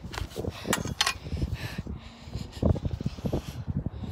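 Handling noise from a phone carried while walking: irregular knocks and rustling over a low rumble of wind on the microphone.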